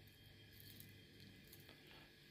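Near silence: room tone, with a few faint ticks of small fishing tackle (swivel, bead and clip on line) being handled.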